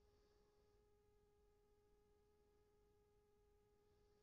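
Near silence with a faint steady electronic tone at one pitch.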